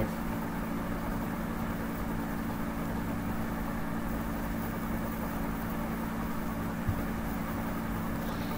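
Steady low background hum with a faint even hiss, holding a few low steady tones, and a single soft low knock about seven seconds in.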